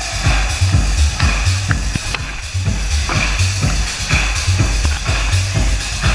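Loud electronic dance music from a DJ set over a large festival sound system, a heavy bass kick drum hitting about twice a second.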